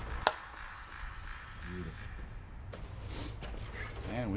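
Plastic Mopar wheel centre cap pressed into an aluminium wheel, snapping into place with one sharp click, then a fainter click a couple of seconds later, over a low steady rumble.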